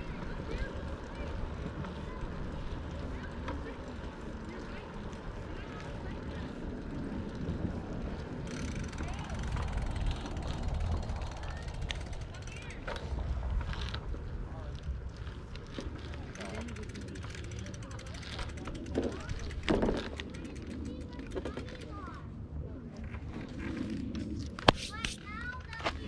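A bicycle rolling along a paved path, heard as a steady low rumble of wind and tyre noise on a handlebar-mounted microphone, with a few light knocks and rattles from the bike.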